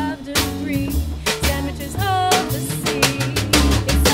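Live acoustic band music driven by a drum kit, snare and bass drum hits, over low sustained bass notes, with a melody line that holds some notes and slides on others.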